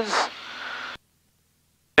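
The last syllable of a spoken word over the cockpit intercom, then a faint hiss that cuts off suddenly about a second in, leaving dead silence with no engine sound.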